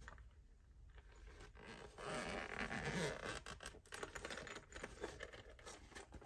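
The zipper of a hard-shell glasses case being pulled open, a rasping run about two seconds in, followed by lighter scratching and clicks as the case is handled and opened.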